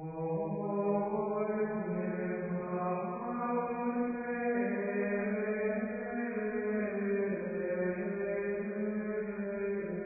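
Chanted singing that comes in at once and holds long notes, shifting pitch slowly from one sustained tone to the next.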